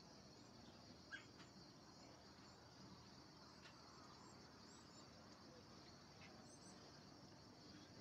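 Near silence outdoors: a faint, steady, high-pitched insect chorus.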